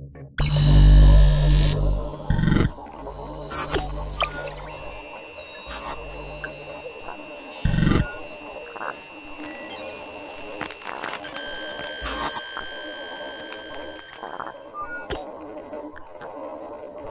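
Electronic intro music and sound design for a channel's title sequence: a deep bass hit near the start, then crackling digital glitch noises, a few more hits and long steady high electronic tones.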